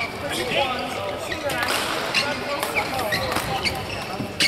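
Badminton rally: repeated sharp racket strikes on the shuttlecock and footfalls on the court, over voices in the hall.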